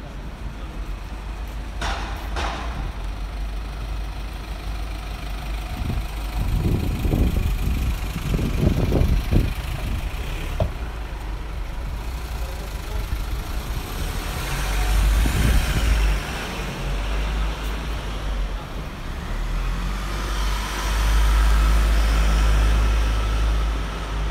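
City street traffic: road vehicles pass at intervals over a steady low rumble, and the loudest pass comes near the end.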